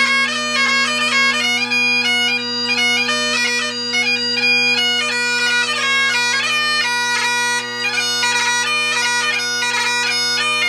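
Great Highland bagpipe played solo: steady drones under a fast chanter melody ornamented with quick grace notes, part of a hornpipe and jig set.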